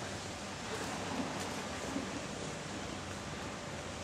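Steady, even hiss of outdoor ambience in a garden, with no single distinct sound standing out.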